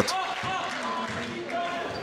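Background ambience of an indoor sports hall: faint voices of players and people around the court, carrying in the hall's echo.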